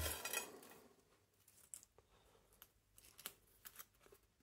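Folded paper slips rustling against a stainless-steel bowl as a hand stirs through them, dying away within the first second. Then a few faint paper crinkles as a folded slip is opened out.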